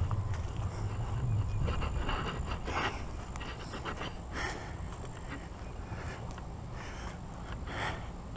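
A person walking over grass and leaf litter with a body-worn camera: a low steady rumble on the microphone with a few soft footstep scuffs.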